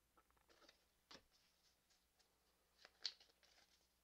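Near silence, with faint soft clicks and slides of Pokémon trading cards being handled, the clearest about a second in and about three seconds in.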